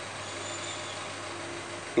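Steady background noise with a faint low hum in a pause between spoken phrases, with no distinct event.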